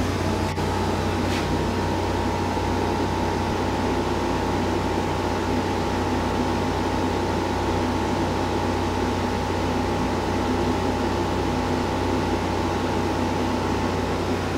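A steady machine-like hum and hiss with a thin constant tone above it that comes in about half a second in, unchanging throughout.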